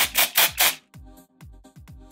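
Aerosol can of glitter hairspray being shaken, rattling in about four quick strokes in the first second, over background music.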